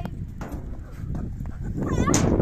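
A child's high-pitched shout, rising in pitch, starting near the end, over a steady low rumble.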